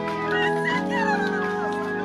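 Church organ holding sustained chords, moving to a new chord about three-quarters of a second in.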